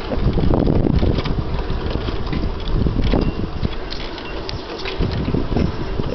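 Wind buffeting the microphone: a loud, uneven low rumble that rises and falls, easing off a little over the second half.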